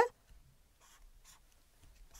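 Faint felt-tip marker strokes on paper: a few short, soft scratches.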